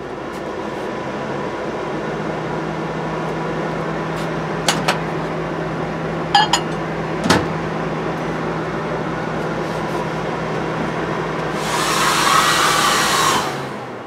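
Steady hum of RV appliances running, with a few short beeps and clicks from the microwave keypad. Near the end a hair dryer comes on loud for about two seconds, then everything cuts out at once: the 120 V circuit breaker tripping from overload.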